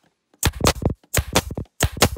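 Pneumatic picture-frame point driver firing flexi points into a frame backboard, three shots about two-thirds of a second apart. Each shot is a short, loud clatter of sharp clicks.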